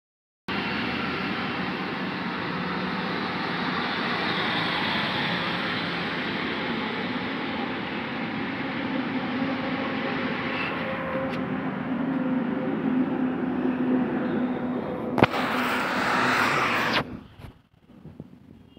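Steady motor-vehicle running noise, a constant rush with a faint hum in it. About 15 seconds in there is a sharp click, then a brighter hiss for about two seconds before the sound cuts off suddenly.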